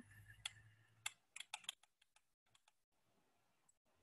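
Faint, irregular clicking of computer keys: a short run of light taps in the first two seconds, then near silence.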